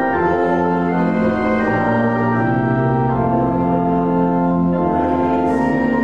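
Church organ playing a hymn in slow, held chords that change every second or so.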